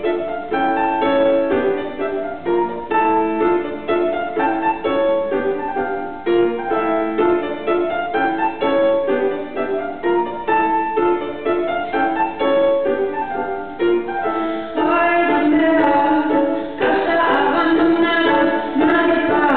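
Live solo playing of a song's chord progression on a single instrument: a repeating figure of notes and chords that grows fuller and louder about fifteen seconds in.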